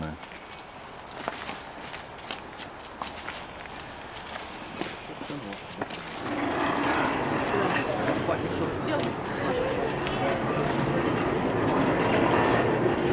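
Footsteps on wet ground with scattered faint clicks. About halfway through, a louder steady murmur of distant voices sets in.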